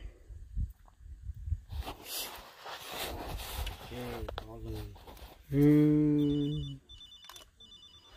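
A person's voice held on one long note, the loudest sound, after a shorter vocal sound, with low rumbling noise on the microphone before it. From about six seconds in, a phone ringtone of short high beeps repeats about twice a second.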